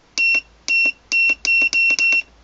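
Sangmutan DC spindle motor controller's beeper sounding about six short, high beeps of the same pitch, coming faster toward the end: one beep for each press of the speed-adjust button as the set speed is stepped up with the motor stopped.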